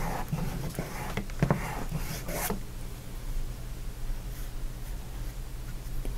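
A flat paintbrush wiping and scraping across a canvas in a few short strokes in the first couple of seconds, then only a steady low hum.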